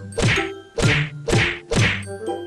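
Four whack sound effects, about half a second apart, over light background music.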